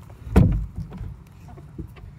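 Hinged wooden lid of a chicken coop's nesting box being lifted open: one sudden loud creak-and-knock about half a second in, sliding down in pitch, then quieter handling rustles.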